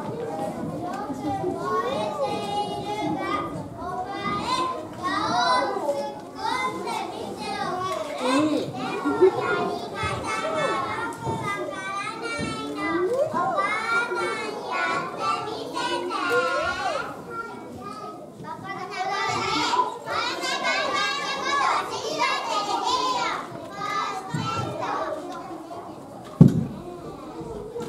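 Many young children's voices talking and calling out at once, a steady high-pitched jumble of overlapping chatter.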